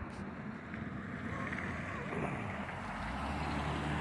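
Steady outdoor background rumble, swelling slightly and deepening in the last second.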